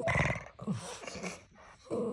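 Lhasa Apso giving a run of short, rough, grumbling vocal sounds, one of them sliding down in pitch, heard as "oh, oh, oh".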